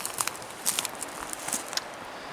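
Footsteps over dry twigs and forest-floor litter: a string of irregular light crackles and snaps as the walker moves along.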